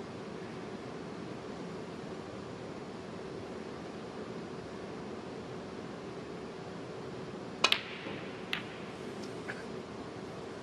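Snooker balls: a sharp double click as the cue strikes the cue ball and the cue ball hits the yellow in quick succession, followed by a few fainter clicks as balls strike the cushions and each other. This is an attempted pot on the yellow that misses. A steady hush of arena room tone runs underneath.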